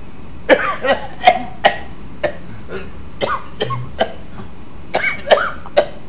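An elderly man coughing hard on a mouthful of food: a fit of about a dozen sharp coughs over some five seconds, bunched at the start and again near the end.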